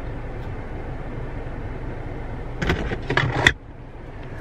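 Steady low hum of a parked car's cabin with its engine running, broken about two-thirds of the way through by a short clatter of clicks and rattles; the hum then drops away, as when the engine is switched off.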